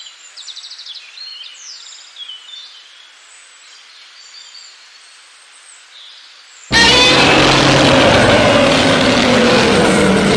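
Faint outdoor ambience with birds chirping, then about two-thirds of the way through a sudden loud, dense sound cuts in and holds.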